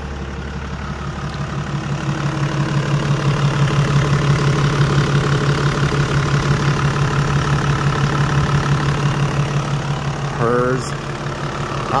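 Toyota Land Cruiser 80 series 24-valve straight-six diesel idling steadily, seconds after an instant start. It grows louder over the first few seconds, then holds steady.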